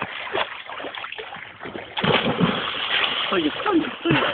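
Water splashing as swimmers thrash about, growing louder about halfway through.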